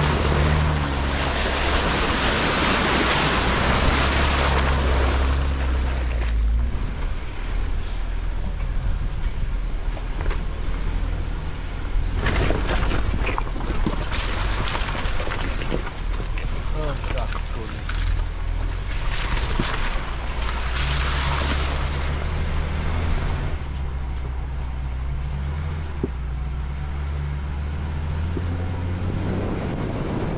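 A Jeep's tyres churning and splashing through a muddy water hole for about the first six seconds, then the Jeep's engine running with tyre and wind noise as it drives along a dirt trail.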